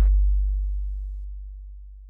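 The final deep bass note of a lofi song ringing on alone and fading away steadily after the rest of the music cuts off.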